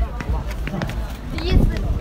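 Footsteps of several people walking quickly, over a low rumble on a handheld phone's microphone, with brief indistinct voices.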